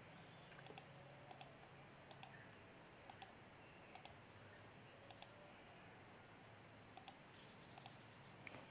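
Faint sharp clicks over near-silent room tone, mostly in quick pairs about a second apart, with a gap of nearly two seconds before the last few.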